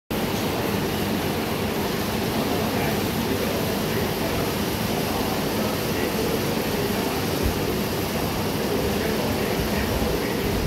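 Steady low mechanical rumble in a lift lobby, with a single soft thump about seven and a half seconds in.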